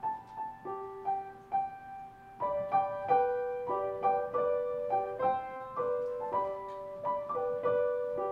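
Grand piano played solo in a slow piece, each note struck and left ringing. The playing grows fuller and louder about two and a half seconds in.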